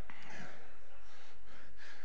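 A man's faint breaths into a close handheld microphone, two short breaths about half a second in and near the end, over a steady low hum.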